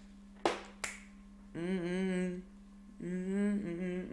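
Two sharp snaps less than half a second apart, then a man humming two long held notes.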